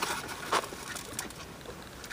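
Quiet chewing of a mouthful of pretzel-crust pizza, with a few faint wet mouth clicks.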